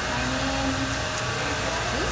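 Handheld hair dryer running steadily on curly hair during salon styling, a continuous even rush of air noise.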